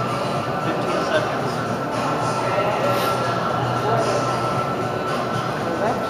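Steady background hum and hiss with a constant low drone, with faint, distant voices now and then.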